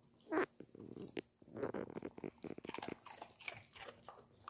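Beagle eating a crunchy chip: a loud bite about half a second in, then rapid, repeated crunching and wet chewing clicks.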